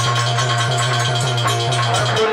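Instrumental folk music with no voice: sustained held chords over a steady low drone, with a regular shaker-like percussion beat.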